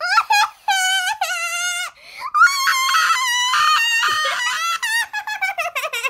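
A high voice letting out long, wavering play-acted screams with no words: two drawn-out cries, the second louder, then short broken yelps near the end.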